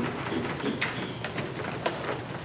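A congregation rising from wooden pews: rustling, shuffling and creaking, with sharp clicks or knocks about a second in and again near the end.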